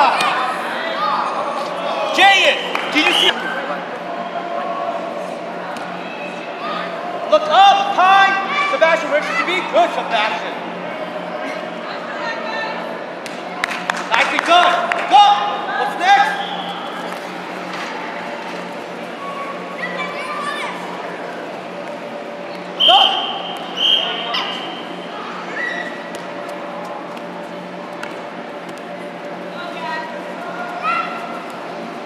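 Indoor youth soccer game ambience in a large echoing hall: scattered shouts from players and onlookers and the thud of the ball being kicked, over a steady low hum.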